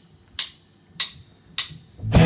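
A drummer's count-in: three sharp, evenly spaced clicks a little under two a second, setting the tempo for the band.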